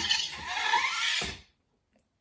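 Motorised Iron Man replica helmet opening its faceplate on a voice command: the servo mechanism runs under the helmet's built-in robotic sound effect, a hissing, whirring sound with a rising note, which cuts off suddenly about one and a half seconds in.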